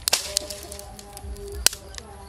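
Dry twigs snapping and clacking as sticks are broken and laid on a small pile of kindling: a few sharp cracks, the loudest late on.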